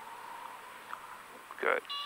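Faint steady cabin noise of a light single-engine plane, heard through the headset intercom during the landing flare. A steady horn-like tone of several pitches starts abruptly right at the end.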